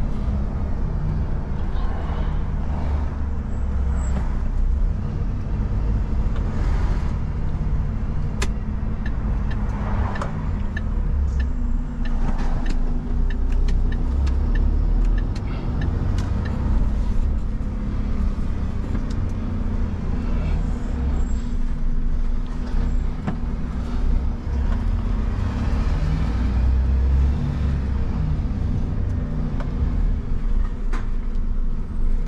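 A Renault refuse truck's diesel engine and road noise heard from inside the cab while driving, the engine note rising and falling with speed. A light, regular ticking comes in around the middle.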